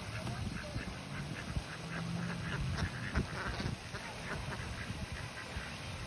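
Ducks quacking: a run of short, repeated quacks from several birds, thickest in the middle of the stretch.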